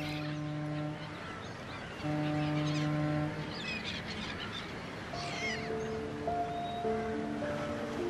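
Two long, low blasts of a ship's horn, the second a little longer, with birds calling faintly. Soft background music with held notes takes over in the second half.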